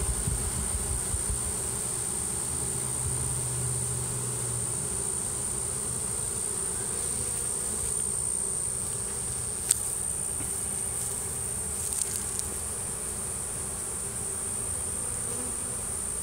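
Steady buzzing of a honeybee swarm massed on the ground, with a thin, high steady tone above it. A single sharp click sounds a little under ten seconds in.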